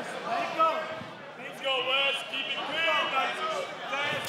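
Only speech: voices talking throughout, with no other sound standing out.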